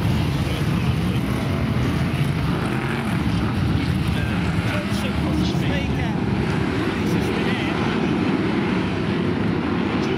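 Several BriSCA F1 stock cars' V8 engines running together as the pack laps the shale oval, a steady, loud blend of engine noise.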